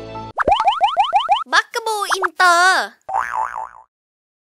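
Background music stops, then a short cartoon logo sting plays. It has a run of about seven quick rising springy glides, then squeaky, warbling cartoon-voice chatter, and ends on a wavering tone that cuts off just before the end.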